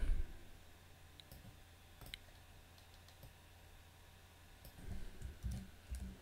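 A few faint computer clicks while text is being selected on screen, over a low steady hum. Near the end there are a couple of soft low thumps.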